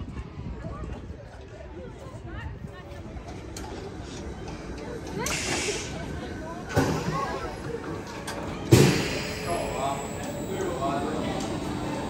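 Vekoma steel roller coaster trains running on the track, with three swells of wheel noise about five, seven and nine seconds in; the last is the loudest and starts sharply. People's voices are mixed in.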